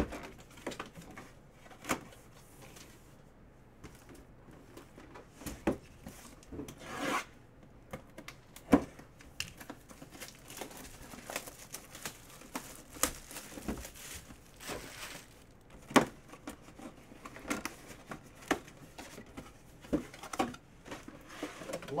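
A cardboard mini-helmet box being handled and opened: scattered rustling, rubbing and tearing of packaging, broken by sharp clicks and taps, the loudest about nine and sixteen seconds in.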